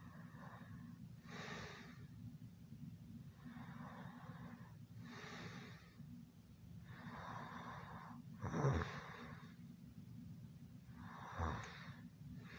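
Slow, heavy breathing of someone asleep, in and out roughly every three to four seconds, with a louder snort about two-thirds through and another near the end, over a steady low hum.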